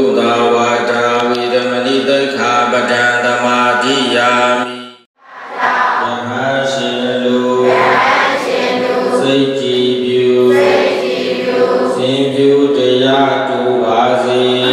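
A congregation of Buddhist devotees chanting together in unison, many voices holding long, steady recitation notes. The sound cuts out briefly about five seconds in, then the chant resumes.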